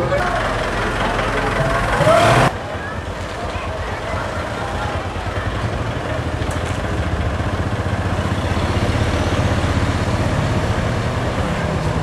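SUV engine running with a steady low hum as the vehicle idles and moves off. In the first two and a half seconds, voices over traffic noise.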